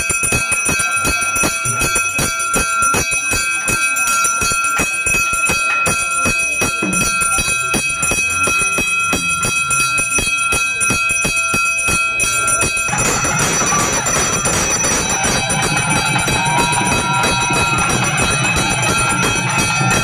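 Small brass temple hand bell rung rapidly and continuously during an aarti, its ringing steady throughout. About two-thirds of the way in, a denser, fuller sound joins the bell.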